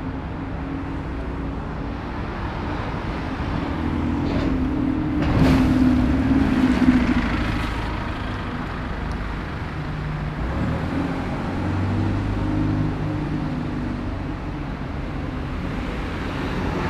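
Street traffic with double-decker buses and cars passing close by. Engine notes rise and are loudest about five to seven seconds in as a bus moves past, with a short burst of noise near the start of that stretch.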